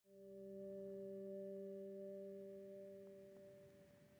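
A faint sustained electronic tone, several steady pure pitches sounding together like a held chord, swelling in over the first half second and fading out shortly before the end.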